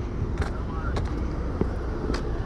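Footsteps on asphalt at a walking pace, a little under two steps a second, over a low steady rumble, with a faint distant voice.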